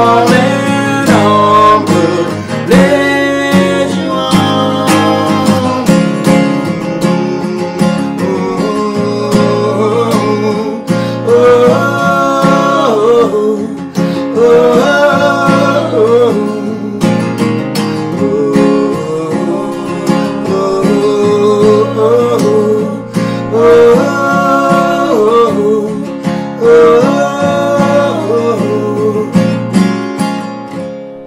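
Steel-string acoustic guitar strummed, with two male voices singing a wordless melody over it (the song's closing "mmm hmm hmm").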